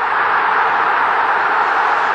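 Large football-stadium crowd cheering a goal, a loud, steady wash of voices.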